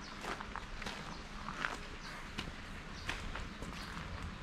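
Footsteps crunching on a gravel path at an even walking pace, about one step every two-thirds of a second.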